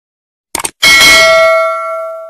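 Subscribe-button sound effect: a quick double click about half a second in, then a bright bell ding that rings on with a few clear tones and fades away.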